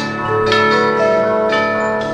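Orchestral film theme music, with bell-like notes struck about every half second and left ringing over one another.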